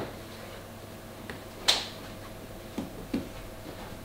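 A few sharp clicks and light knocks from hands working on the boat, the loudest about two seconds in and two smaller ones near the end, over a faint steady hum.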